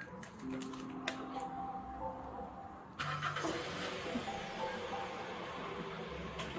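A car's engine outside, heard through an open doorway; its noise rises suddenly about halfway through and carries on. Faint music with short held notes plays underneath.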